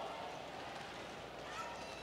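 A pause in amplified sermon speech: quiet room tone in a large hall, with the echo of the preacher's voice through the PA dying away at the start and a faint voice murmuring about halfway through.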